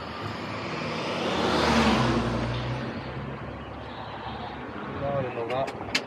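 A road vehicle passing on the street, its tyre and engine noise swelling to a peak about two seconds in, then fading away. A brief voice is heard near the end.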